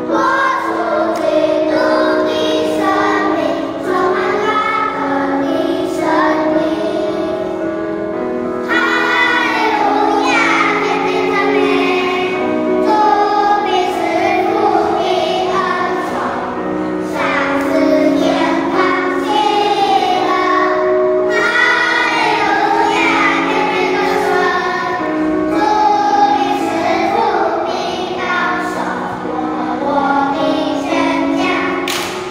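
A children's choir singing a Chinese Christian hymn of praise with "Hallelujah" in its lyrics, continuously.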